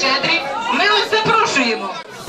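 Speech only: a voice talking over the chatter of guests in a large hall.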